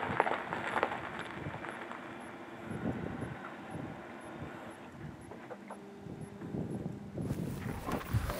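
Quiet outdoor background with a few faint scattered knocks and clicks.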